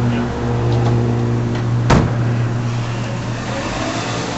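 A car engine idling steadily, with a car door shut once about two seconds in.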